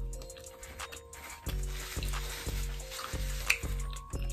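Background music with a steady beat of about two pulses a second, over close, crackly chewing sounds of someone eating bread and pizza.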